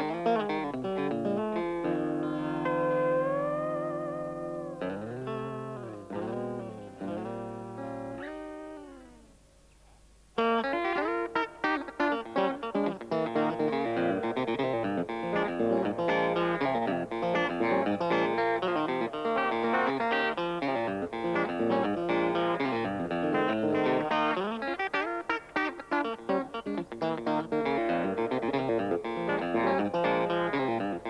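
Telecaster-style electric guitar playing unaccompanied: a held chord in which single notes are bent up and back down with vibrato while the others ring, fading away about ten seconds in. Then fast, busy picked lines begin abruptly and run on.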